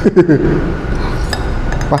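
Metal fork and spoon clinking and scraping against a ceramic plate, with a few light, sharp clinks.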